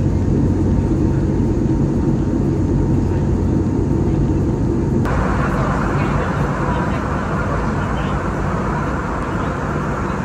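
Steady cabin noise of an Airbus A320-family jetliner in flight: a low engine hum at first, changing abruptly about halfway through to a brighter, rushing air hiss.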